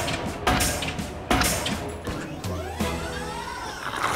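Pile-driver hammer striking the top of a wooden post, two sharp heavy thuds less than a second apart, over background music.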